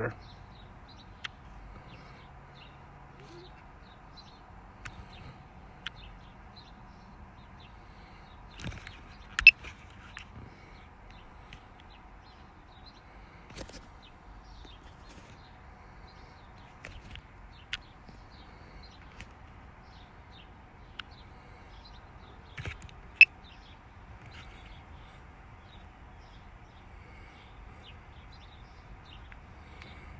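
Quiet outdoor background with scattered short bird chirps. Now and then a sharp click cuts through, the loudest about nine and twenty-three seconds in.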